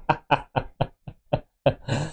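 A man laughing hard: a run of short breathy bursts, about four a second.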